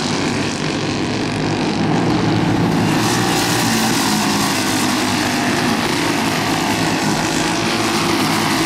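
Several Briggs & Stratton flathead racing kart engines run at racing speed as the pack goes round the oval, a steady, overlapping drone.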